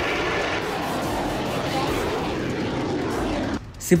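Rocket motor of a missile at launch: a steady rushing noise that cuts off suddenly about three and a half seconds in.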